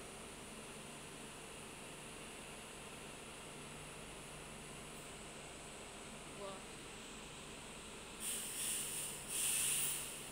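Steady low hum of a light-rail station beside a train standing at the platform, with two short bursts of hiss near the end.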